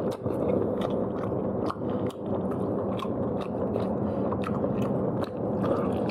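A person chewing and biting food close to the microphone, with many quick, irregular wet clicks and crunches. Underneath runs a steady low hum.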